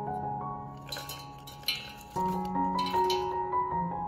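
Sea buckthorn berries tipped from a wooden bowl into a stainless steel pot, clinking and pattering onto the metal and the mandarin slices in a few quick spills about one, two and three seconds in, over soft piano music.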